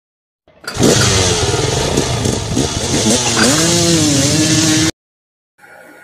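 Scooter engine starting and revving, its pitch rising and falling, cutting off suddenly about five seconds in.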